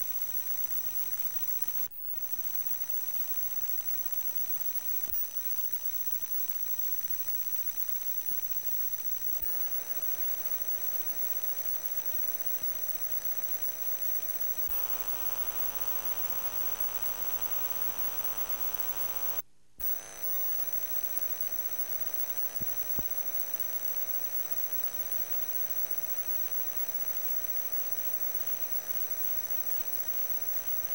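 Steady electrical hum and buzz with a thin high whine on an old videotape soundtrack, carrying no program sound. The buzz grows fuller about a third of the way through, cuts out completely for a moment a little past halfway, and a few faint clicks sit on top.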